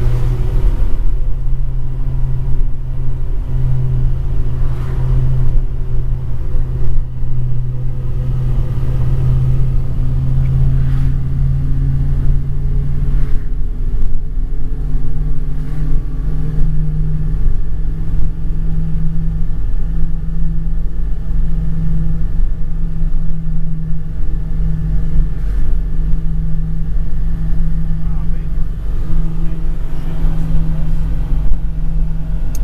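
Volvo TGB-series 6x6 military truck heard from inside the cab at road speed: its straight-six petrol engine runs steadily over low road rumble, and the engine note steps up in pitch about halfway through.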